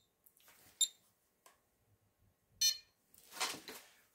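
Short, high electronic beeps from a GQ GMC-300E Geiger counter, coming singly at irregular intervals about a second apart. A longer, buzzier beep comes near the end, followed by faint rustling.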